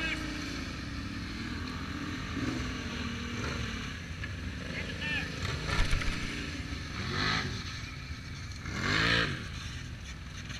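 Several ATV engines running at low speed, a steady low rumble with a couple of louder swells near the end.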